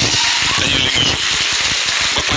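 Audience applauding, a dense steady patter of many hands clapping, with some voices mixed in.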